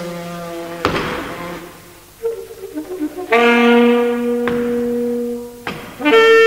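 Solo alto saxophone playing in a contemporary, experimental style. A held note is cut by a sharp percussive attack about a second in, then a louder long note is held for about two seconds, and two more sharp hits come near the end.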